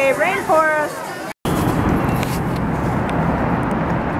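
A voice calls out briefly. After a sudden cut, steady outdoor city traffic noise takes over, a constant low rumble with no distinct events.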